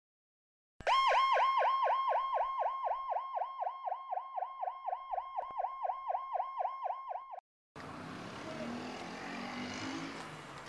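An electronic emergency-vehicle siren in a fast yelp, its pitch rising and falling about four times a second. It fades slowly, then cuts off suddenly about seven seconds in, and a steady hiss of street noise follows.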